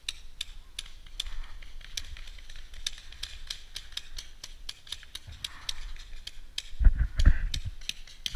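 A run of short, sharp clicks, several a second, then from about seven seconds in heavier bumping and rustling on the helmet-mounted camera as the player shifts in the grass.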